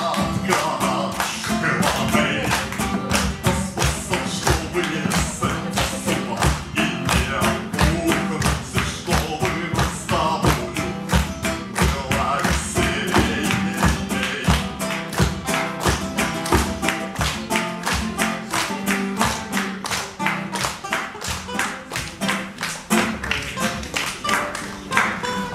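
Nylon-string classical guitar strummed fast and hard in a steady rhythm, with a man singing a song over it.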